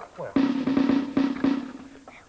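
A drum played in a rapid roll of quick strokes, starting about a third of a second in and fading toward the end.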